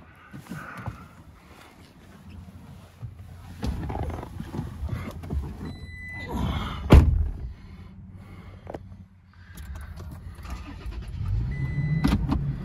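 A driver getting into a car: rustling and knocks of climbing in, a brief warning chime, then the driver's door shutting with a loud thud about 7 seconds in. Near the end the vehicle comes on with a low rising sound and its seatbelt warning chime starts.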